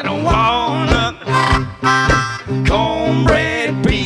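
Live blues band playing, with harmonica over guitar and a steady drum beat.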